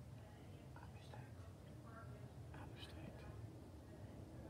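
Faint, hushed voice, a person whispering or speaking very softly in short bits, over a steady low background rumble.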